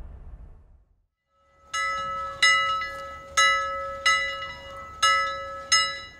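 Bell sound effect: a bell struck about six times, under a second apart, each strike ringing on and fading, starting after a moment of silence.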